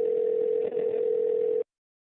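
A phone's ringback tone heard during an outgoing call: one steady tone lasting nearly two seconds, the sign that the call is now going through.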